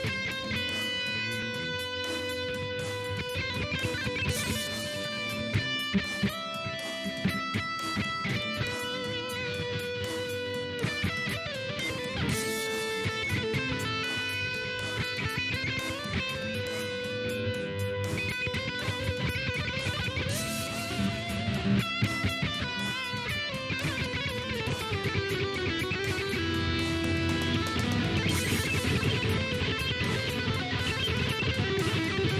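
Instrumental rock music led by electric guitar, with sustained melody notes over a steady rhythm, growing a little louder near the end.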